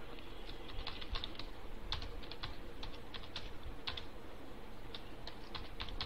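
Typing on a computer keyboard: irregular, scattered keystrokes.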